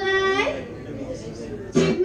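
A woman singing with an acoustic guitar: her voice slides up into a held note at the start, then comes in again loudly near the end.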